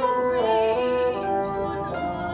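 A female opera singer sings with vibrato, stepping between held notes, over instrumental accompaniment.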